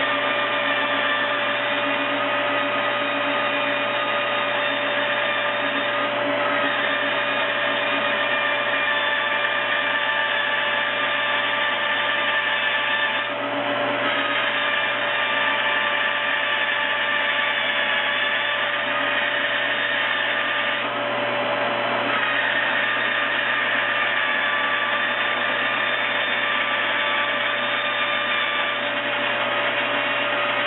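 Benchtop bandsaw running with a steady whine as its blade cuts through a 22-gauge sheet-metal blank fed along the fence. The sound dips briefly twice, about a third and two-thirds of the way in.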